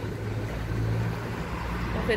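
Street traffic: a motor vehicle's engine giving a steady low hum on the avenue.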